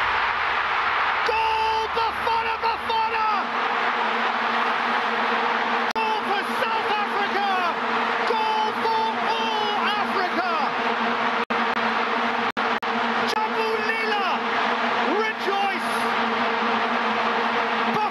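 Stadium crowd cheering a goal under the steady drone of vuvuzelas, with an excited TV commentator's voice over it in stretches. The sound cuts out briefly twice about two-thirds of the way through.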